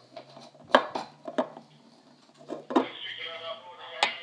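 Bottles and a metal cocktail shaker being handled on a stone countertop: a few sharp clicks and knocks, the loudest about three-quarters of a second in. Background voices come in near the end.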